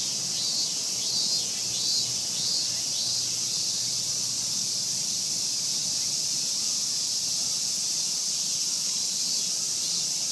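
Steady high-pitched insect chorus from the park trees. During the first few seconds a short run of curved calls repeats about twice a second over it.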